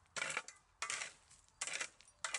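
Metal shovel blade scraping and digging into a heap of gritty earth, three scooping strokes about two-thirds of a second apart.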